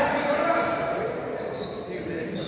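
Indistinct voices of players and spectators, echoing in an indoor basketball gym.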